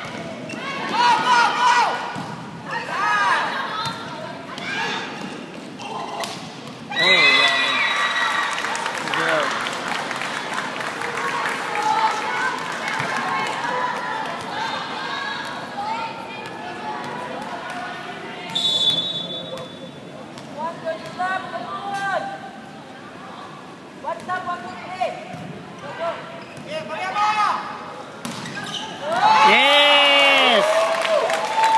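Indoor volleyball rally in a large hall: sharp ball impacts among spectators shouting and cheering, growing louder about seven seconds in. There is a short high whistle about two-thirds of the way through.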